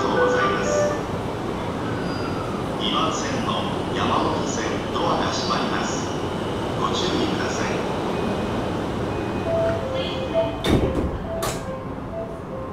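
Inside a JR East E235 series motor car while it runs: steady wheel-and-rail running noise with short high tones from the traction inverter, and two sharp knocks near the end.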